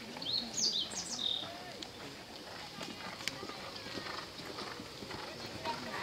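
Open-air arena ambience: people talking in the background, a bird's chirping call of quick rising and falling notes near the start, and a few scattered faint knocks from a horse's hooves on the sand footing.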